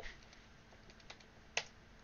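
Faint typing on a computer keyboard: a few soft key clicks, with one sharper click about a second and a half in.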